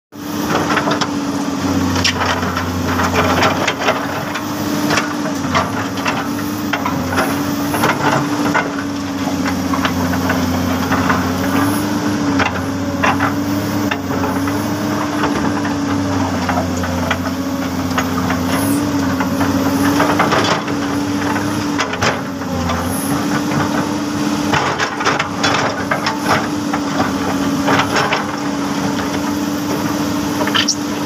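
Komatsu PC200 LC hydraulic excavator's diesel engine running steadily under working load while it digs, its note shifting slightly every few seconds. Scattered rattles and knocks run over the engine throughout.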